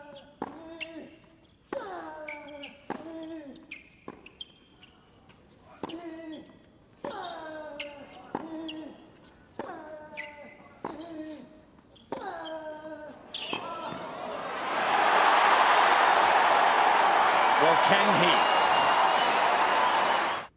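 Tennis rally on a hard court: the racket strikes the ball about once a second, each shot followed by a player's short grunt falling in pitch. About fourteen seconds in, the rally ends and the arena crowd breaks into loud cheering and applause.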